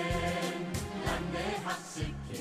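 Music with a choir singing, over a steady low bass line.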